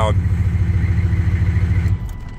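GM 6.5-litre turbo-diesel V8 in a 1996 GMC pickup idling, heard from inside the cab, with an even low pulsing. It runs on its newly fitted DS4 injection pump, timed on the aggressive side, and is switched off right at the end, where the running drops away.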